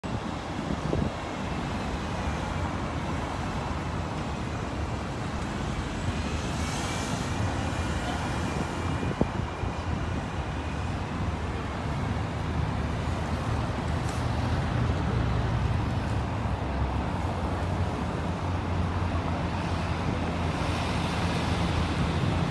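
Street traffic on a city street: a steady hum of car engines and tyres, with a low engine rumble growing louder in the second half.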